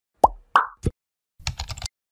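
Animated-intro sound effects: three quick cartoon pops in the first second, then a short rapid run of keyboard-typing clicks that stops just before the text appears in the search bar.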